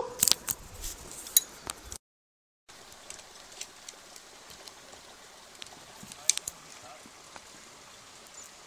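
Rustling and sharp clicks of a phone being handled right against the microphone. After a short dropout there is a faint steady rush of river water with scattered clicks and a brief cluster of louder clicks a little past the middle.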